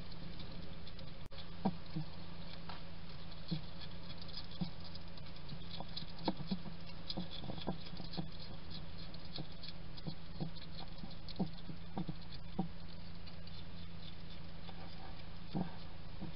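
European hedgehog eating dry food from a ceramic dish, with irregular crunches and clicks of chewing, a few a second. A steady low hum lies under it.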